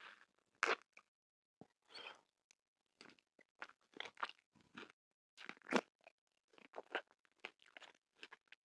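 Close-miked ASMR crunching and chewing of a red-and-white striped candy cane: irregular crackly crunches with loud bites about a second in and near six seconds.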